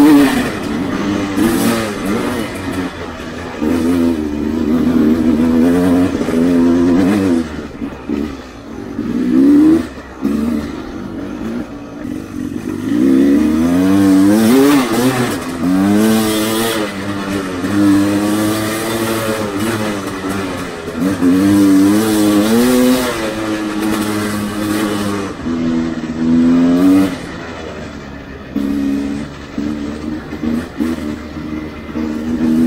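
Sherco enduro dirt bike engine under hard riding, revving up and down over and over as the throttle opens and shuts, with brief drops where it comes off the gas.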